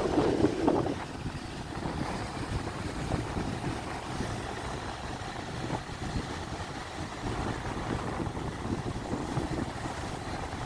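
Wind buffeting the microphone, a steady rumbling rush, somewhat louder for about the first second.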